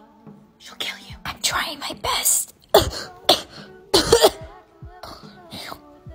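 A woman clearing her throat and coughing in several short, sharp bursts, trying to hold the coughs in and keep them quiet.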